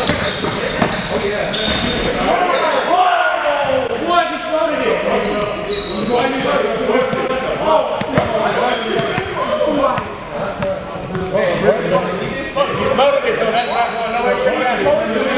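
Live sound of a pickup basketball game on a hardwood gym floor: the ball bouncing as it is dribbled, short high squeaks of sneakers on the court, and players' voices calling out indistinctly.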